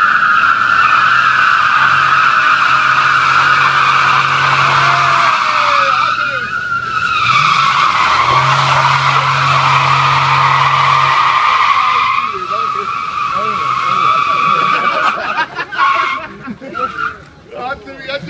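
An SUV's tyres squealing as they spin under power, with the engine running under load beneath them. The squeal stops about fifteen seconds in.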